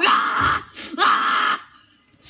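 A boy's wordless, breathy vocal sounds: two drawn-out exclamations of about half a second each, the second beginning about a second in, then quiet near the end.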